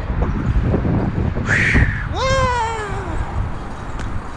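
A cat meows once, a long drawn-out call that rises and then slowly falls in pitch, about two seconds in, with a short hiss-like burst just before it. Under it runs the low rumble of BMX bike tyres rolling on pavement.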